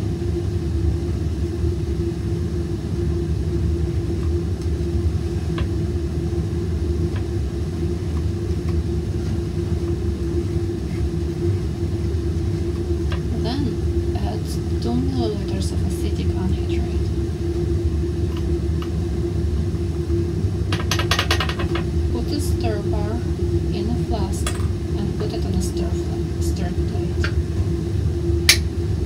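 Steady low hum of a fume hood's ventilation with a constant mid-pitched tone. Light clinks of glassware come around the middle, with a quick run of clicks about 21 seconds in.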